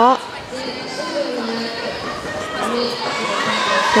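Crowd of spectators and team benches in a sports hall cheering and shouting during play.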